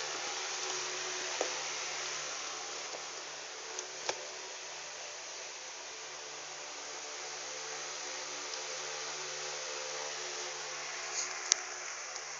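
A small motor running with a steady whir and a low hum. A few light clicks come through, the clearest about four seconds in.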